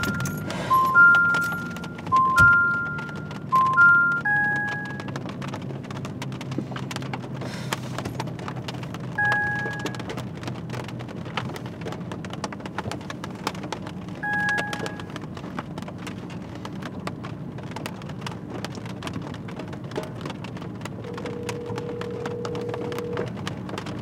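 Rain pattering on a car's roof and windows. An electronic two-note chime repeats for the first four seconds, and a single two-tone beep sounds three times, about five seconds apart. Near the end comes a steady low tone about two seconds long, like a phone's ringback tone as a call connects.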